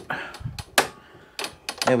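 A lawn mower being rocked back down onto its wheels on a workbench: one sharp knock a little under a second in, then a few lighter clicks and rattles.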